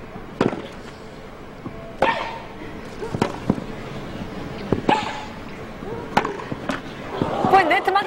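Tennis rally on a grass court: sharp racket-on-ball strikes traded back and forth about every one and a half seconds, some hits with a player's short grunt. A louder voice comes in near the end.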